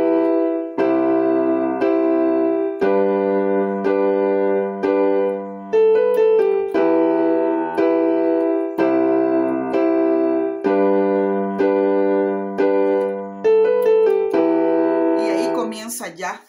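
Piano-voiced keyboard playing the song's introduction in G major: block chords of E minor, C major and G major, each struck a couple of times about once a second, followed by a short melody line of a few single notes. The pattern is played twice.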